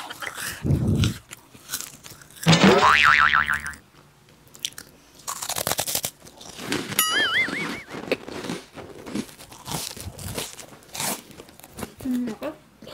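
Close-miked crunching and chewing of crispy puffed junk-food snacks, bitten and chewed right at a clip-on microphone. Two short wobbling pitched tones cut in over it: the first and loudest about two and a half seconds in, a thinner one about seven seconds in.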